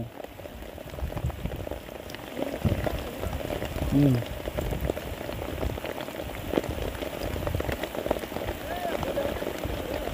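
Light rain pattering steadily on wet ground and leaves, a dense run of small ticks, with a brief low voice sound about four seconds in.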